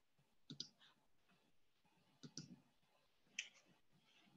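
Near silence with three faint computer mouse clicks, about half a second, two seconds and three and a half seconds in, as a screen share is started.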